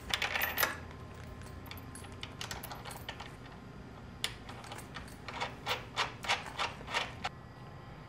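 Small metallic clicks and clinks of a nut being turned by hand onto a 3/8-inch steel bolt through a wooden beam: a few at first, more a few seconds later, then a quick run of clicks near the end.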